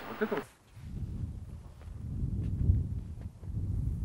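Low, uneven rumble of wind buffeting the microphone, with a few faint footsteps on rock.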